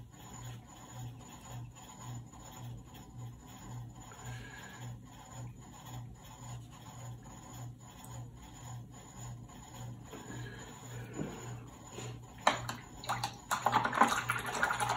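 Faint rubbing of a small watercolour brush on rough watercolour paper, over a low hum that pulses about three times a second. A few sharp clicks or knocks come near the end as the brush is lifted away.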